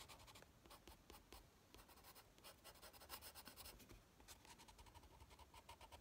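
Faint scratching of a Prismacolor coloured pencil on paper: a rapid run of short, curved shading strokes.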